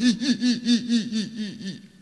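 A woman laughing hard: a rapid run of short 'ha' pulses, about six a second, that gradually dies away.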